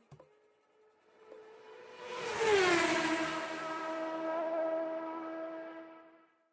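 Travel sound effect for a cartoon journey machine. About two seconds in a whoosh comes with a tone that slides down in pitch, then settles into a steady hum that fades out at the end.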